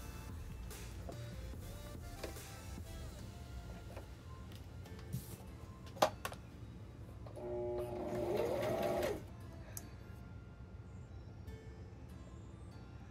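Brother electric sewing machine running as fabric is fed through it, a steady low hum, under faint background music. A single sharp click about six seconds in.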